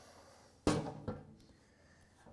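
A sheet-steel replacement floor pan knocking once against a tubular metal stand as it is turned over by hand, with a fainter clunk just after.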